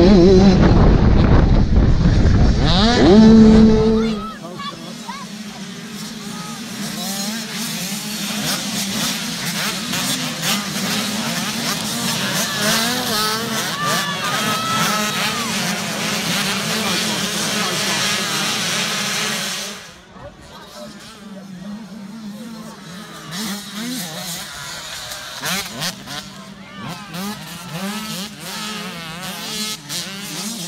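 Youth 85cc two-stroke motocross bikes racing. For about the first four seconds one bike is heard up close, loud and revving higher. Then the sound drops suddenly to several bikes further off, their engines rising and falling in pitch as they accelerate and shift, and quieter again from about two-thirds of the way in.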